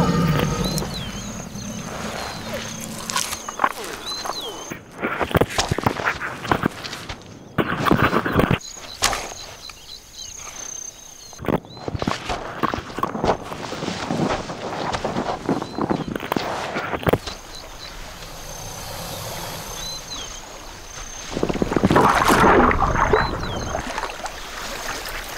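Water sloshing and splashing in irregular bursts as a mother crocodile carries her hatchlings through the water in her mouth, with a few short high chirps from the hatchlings in the first few seconds.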